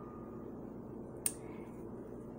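Quiet room noise in a pause between words, with one short, sharp click a little over a second in.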